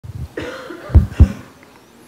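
A man coughing twice into a close microphone, the two coughs about a quarter second apart.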